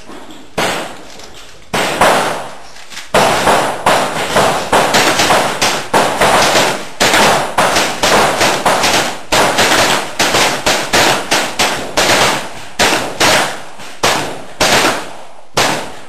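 Lever-action rifle fired rapidly: a few spaced shots at first, then a long fast string of about three shots a second from around three seconds in, slowing to spaced shots near the end.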